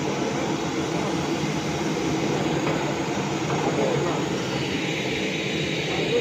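Puffed-rice roasting machine running steadily, its rotating drum tumbling the grains as puffed rice pours out through the mesh sieve, making a constant mechanical rattle and rumble.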